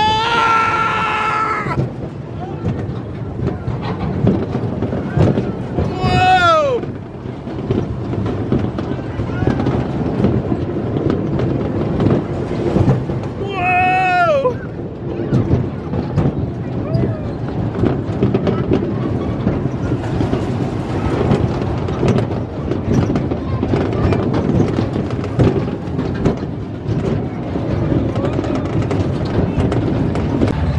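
Tilt-A-Whirl ride running at speed: a steady rumble and clatter from the spinning car and its platform. A rider whoops twice, about six and fourteen seconds in, each call falling in pitch.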